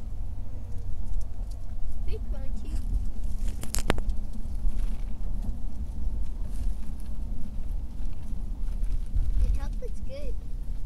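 Low, steady rumble of road and engine noise inside a moving car's cabin, with one sharp click about four seconds in.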